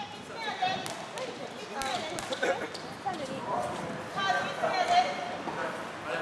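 Several people talking in a gym, with a few scattered sharp knocks, such as a basketball bounced on the wooden court.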